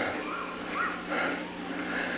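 Quieter voices of congregation members calling out in short bending phrases, over a steady low hum on the recording.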